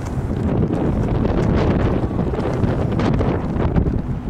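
Wind buffeting a handheld camcorder's microphone on an open ship deck: a loud, steady rumble with small gusts.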